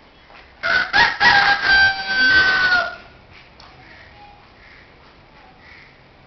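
A rooster crowing once, loud and close, beginning with a few short notes and ending in a long held note that drops away, about two seconds in all.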